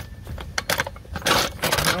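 Steel low-profile floor jack being pushed over a gravel driveway: its wheels crunch and scrape over the loose stones in a few irregular bursts, loudest about one and a half seconds in.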